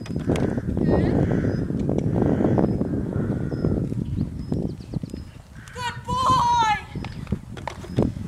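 Chestnut horse cantering on a soft arena surface, with a run of muffled hoofbeats. About six seconds in, a brief high-pitched call cuts across.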